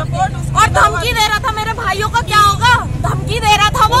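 A woman's voice speaking continuously in Hindi over a steady low rumble of street noise.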